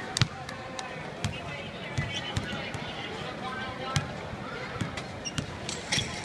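A basketball bouncing on a hardwood court floor, about seven thumps at uneven intervals, the loudest near the start. Voices talk in the background.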